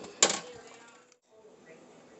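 A sharp clink of a stirring utensil against a pot of boiling pasta, fading off and cutting out suddenly about a second in, followed by a faint steady room hum.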